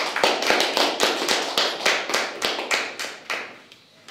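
Hand clapping, distinct even claps about three to four a second, fading away near the end.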